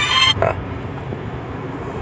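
A music bed of steady tones cuts off about a third of a second in. It leaves a steady low rumble of the car's cabin, with one short sound just after the cut.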